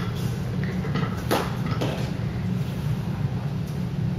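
Paper towel rustling as a long sheet is spread over strawberries on a countertop, with a few brief crinkles, the strongest about a second and a half in. A steady low hum runs underneath.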